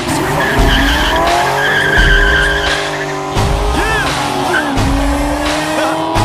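Car accelerating hard away with its tires squealing and the engine's pitch climbing. The pitch dips once past the middle, then climbs again.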